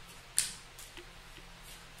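Tarot cards being handled: one sharp click about half a second in, then a few faint ticks.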